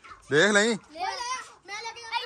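Children's voices talking and calling out in several short bursts.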